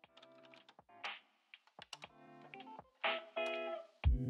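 Quiet intro of a chill-hop track: short retro jazz guitar chords with scattered light clicks and ticks, before the beat comes in.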